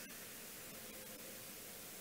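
Faint steady hiss of the recording's background noise, with nothing else heard.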